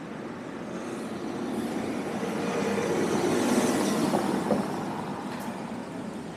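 A car passing close by, its engine and tyres on the brick-paved street growing louder to a peak about three and a half seconds in and then fading as it moves off, with a short click near the peak.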